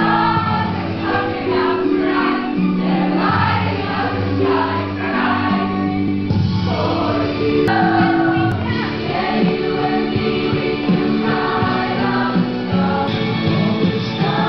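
Music with a choir of voices singing, the melody moving between long held notes over steady accompaniment.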